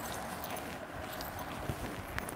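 Faint rustling of a saree's cloth as it is shaken out and spread open by hand, with a few light knocks.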